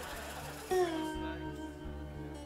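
Lap slide guitar: an acoustic guitar played flat on the lap with a slide bar. A note is plucked about two-thirds of a second in, slid down in pitch, then left ringing and fading.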